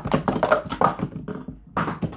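Plastic sport-stacking cups clacking against each other and the mat in a fast run of many clicks a second as the cups are stacked into pyramids, with a short lull and then another loud clatter near the end.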